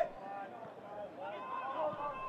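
Faint distant voices shouting and calling across an outdoor football pitch.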